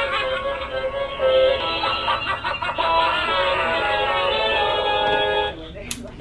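Animated Halloween TV decoration playing music with a singing voice through its small built-in speaker, thin with no high end. It cuts off abruptly about five and a half seconds in, followed by a short click near the end.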